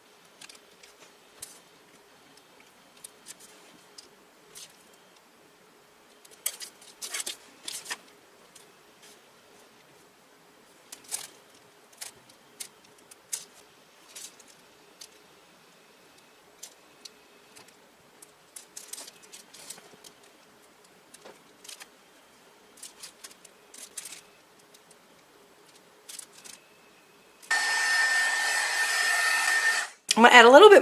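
Faint scattered taps and rustles of brush work on a plastic-covered work surface. About 27 seconds in, a hand-held electric drying tool switches on and blows steadily with a high whine, drying the gouache on the painted fabric strip.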